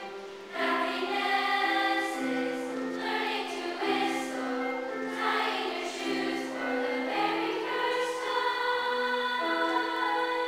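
A youth choir of girls and boys singing in parts, holding long notes that step from pitch to pitch, with a brief pause for breath about half a second in.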